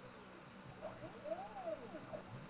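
Stepper motors of a QueenBee CNC router moving an axis during an automatic probing routine: a whine that rises and then falls in pitch as each move speeds up and slows down. The loudest move peaks about midway through.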